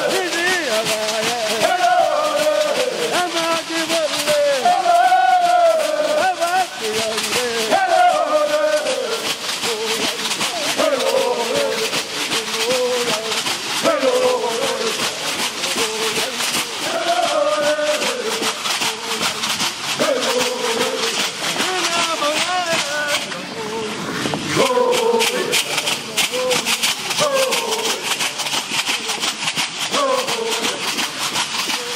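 Stomp dance song: men's voices chanting short phrases that rise and fall, over the steady, fast rattle of the women's shell-shaker leg rattles keeping time with the dancers' steps.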